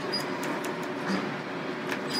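Steady low hum inside a Montgomery-Kone elevator car standing with its doors open, with a sharp click just before the end.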